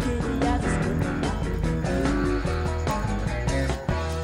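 A live rock and roll band playing an up-tempo number, with lead guitar over bass and drums, heard from an old reel-to-reel tape. There is a brief dip in loudness near the end.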